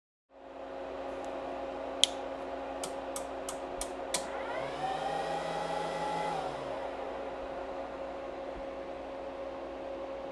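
Steady whir and hum of the cooling fans of electronic test gear. A quick run of sharp clicks comes about two to four seconds in, and midway a tone rises and holds for about two seconds before fading.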